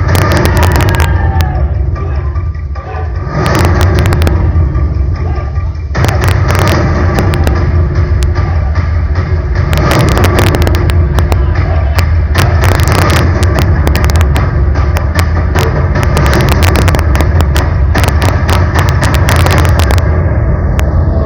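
Loud live stage music driven by many rapid drum strikes over a heavy low rumble. There is a brief lull about three seconds in, and the drumming grows dense from about six seconds on.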